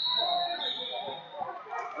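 Several voices calling and shouting, echoing in a large hall.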